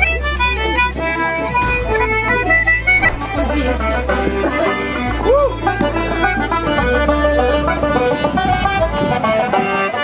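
Live street busking: a fiddle and a small squeezebox playing a lively folk tune together, with wind rumbling on the microphone.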